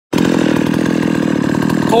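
Ported Husqvarna 51 two-stroke chainsaw running steadily, not yet cutting.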